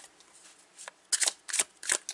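Tarot deck being shuffled by hand: a few short, crisp card flicks in the second half.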